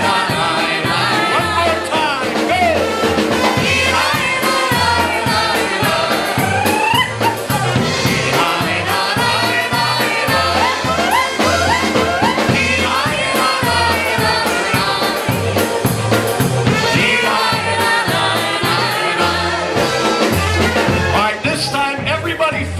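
Live polka band playing, accordion, trumpet, keyboard and drum kit over a steady bass pulse, with several voices singing together.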